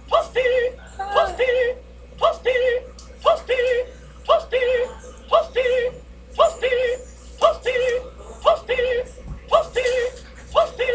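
A looping electronic warbling sound: a short rising note followed by a warbling tone, repeated identically about once a second.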